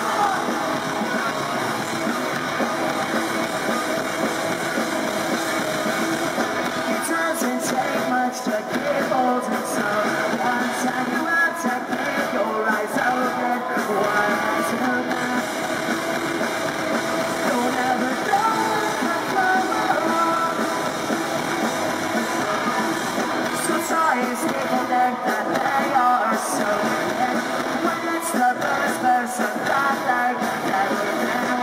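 Live pop-punk band playing at full volume, with electric guitars, bass guitar, drums and sung vocals, recorded from the crowd on a handheld camera.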